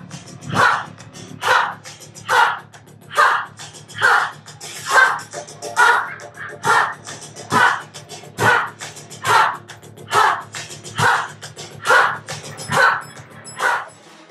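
A group of people shouting short calls together in unison, evenly spaced about once a second, over steady background music.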